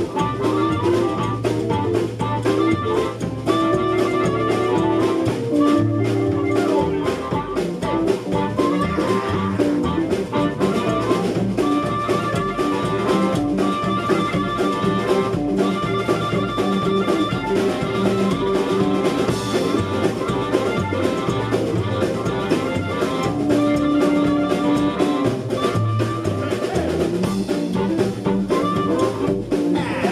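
Live blues band playing an instrumental passage: a harmonica carrying long held notes over electric guitar, upright bass and a drum kit.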